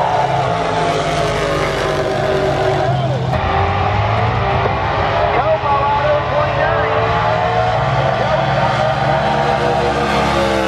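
Drag-racing cars making a pass down the strip at full throttle, engine notes rising and falling, loud, with people talking nearby.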